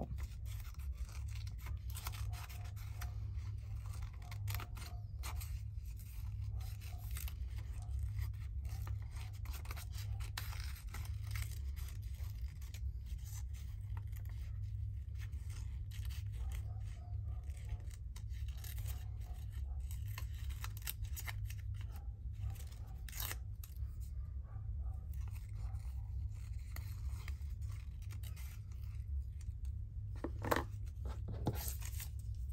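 Small scissors snipping paper, many short irregular cuts while trimming closely around a printed cut-out, over a steady low hum.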